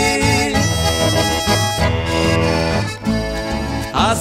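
Instrumental break in a gaúcho song: an eight-bass button accordion (gaita de oito baixos) plays the melody over acoustic guitars and double bass. The music dips briefly about three seconds in.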